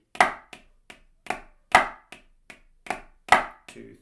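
Wooden drumsticks playing a pipe band practice pad in a slow, steady pulse of single strokes, about two and a half a second, with a louder accented stroke every fourth hit. This is a 16th-note flam exercise.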